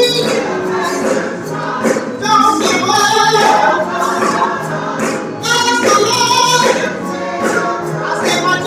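Gospel singing, led by a woman at a microphone with a choir joining in. The singing comes in phrases, with short breaks about two seconds and five seconds in.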